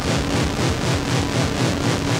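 Experimental analog electronic music from home-built instruments: a dense, noisy wash pulsing evenly several times a second, with faint held tones beneath it.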